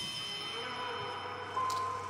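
Film-score music: several held high tones over a low drone, with a short click near the end.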